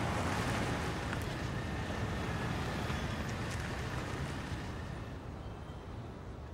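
Road noise of a car driving past on a city street: a steady rush that slowly fades away.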